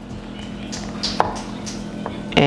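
Chef's knife slicing through a peeled plantain and knocking on a wooden cutting board: a few short, separate knocks over a faint steady hum.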